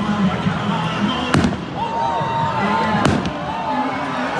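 Fireworks bursting overhead: two sharp bangs, about a second and a half and three seconds in.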